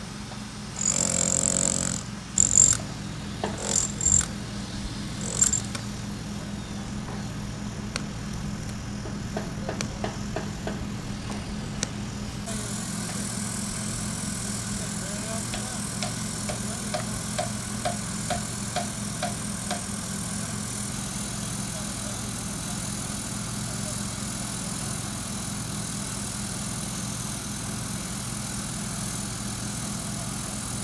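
A hand-held power hammer drill bores into brick in several short bursts. Later come about seven evenly spaced hammer blows, roughly two a second, over a steady engine hum.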